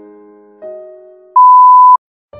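Soft, slow piano notes, cut off about a second and a half in by a single loud, steady beep tone lasting about half a second that stops abruptly.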